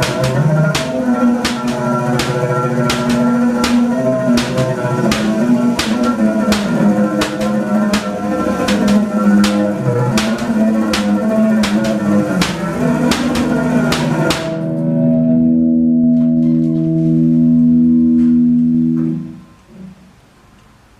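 Loud music with a steady beat of about two strokes a second under a busy melody. About fourteen seconds in the beat drops out and a held chord sounds, fading away shortly before the end.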